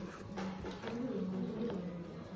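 A man's low, closed-mouth voiced hum, held for about a second and a half with a slightly wavering pitch.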